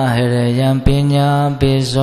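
A man chanting Buddhist Pali verses, low and slow, in long held notes on a nearly steady pitch, with two short breaks between phrases.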